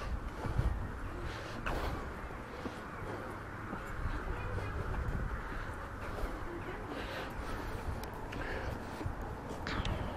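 Outdoor street ambience picked up while walking: a steady low rumble and hiss, a few soft knocks, and faint chirps.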